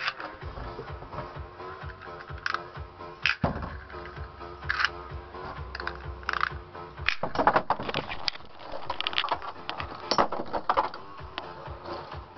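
Spinning Beyblade Metal Fight tops, Blitz Striker 100SF and Gravity Destroyer AD145W2D, clashing in a plastic Beystadium: irregular sharp metal clacks, coming thick and fast in the second half. Electronic dance music plays throughout.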